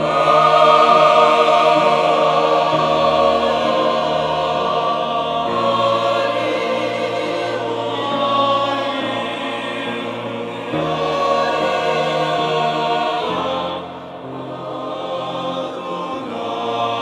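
Mixed choir of men's and women's voices singing a hymn in sustained chords. One phrase ends and the next begins about 14 seconds in.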